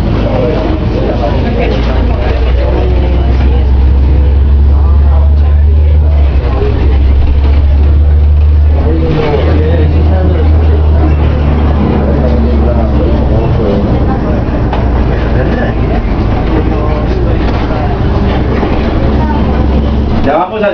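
City bus engine and running gear rumbling low and steady, heard from inside the passenger cabin while the bus drives, heaviest from about four seconds in with a brief dip near the middle. Passengers talk quietly underneath.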